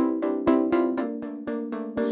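Instrumental music: a steady run of short, repeated pitched notes at about four a second, before the vocals come in.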